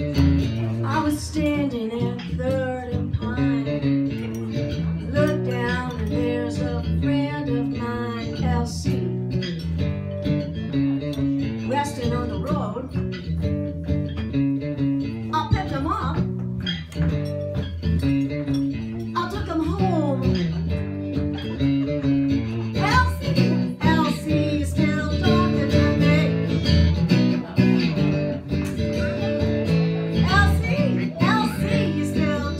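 Live acoustic guitar playing with a woman singing over it, her long held notes wavering with vibrato and sliding between pitches.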